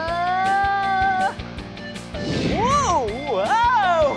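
Background music with drawn-out "whoa" exclamations over it: one long held cry rising slightly in pitch at the start, then sliding, rising and falling cries near the end, as beginners wobble on roller skates.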